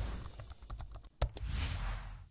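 Computer keyboard typing sound effect, a quick run of key clicks, as if a web address is being typed into a search bar. It is followed near the end by a short rush of noise.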